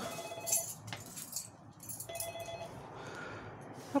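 Door-entry keypad intercom sounding its call tone: two short electronic rings about two seconds apart.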